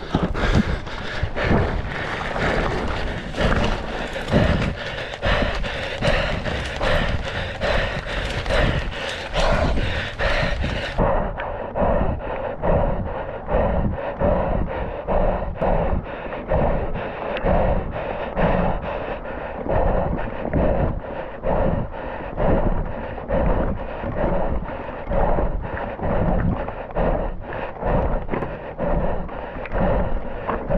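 A mountain biker breathing hard and rhythmically under race effort, mixed with wind on the microphone and the bike's rattle over the trail. The sound becomes duller about eleven seconds in.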